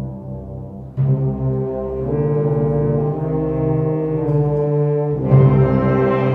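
A school concert band playing held brass chords over low brass and tuba. The band comes in louder and brighter about a second in, and swells again just after five seconds.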